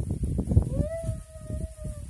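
An animal's long howl-like call starts about half a second in and is held for well over a second, falling slightly in pitch. Irregular clicking and knocking runs under it, loudest before the call begins.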